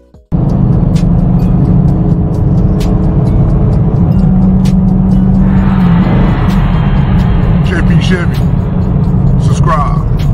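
Loud hip-hop music with vocals playing inside a moving car's cabin, over engine and road noise. It cuts in abruptly just after the start.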